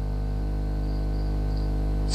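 Steady low electrical hum with a ladder of evenly spaced overtones, and a faint high whine that comes in for about a second in the middle.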